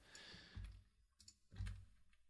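Faint clicks from a computer keyboard and mouse as code is edited, over near silence, with a soft low bump near the end.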